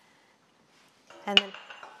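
A single sharp clink of a kitchen utensil against a dish, with a short ringing tail, after about a second of near silence.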